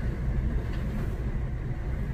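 Steady low rumble of a car's engine and tyres on the road, heard from inside the cabin while driving at a steady pace.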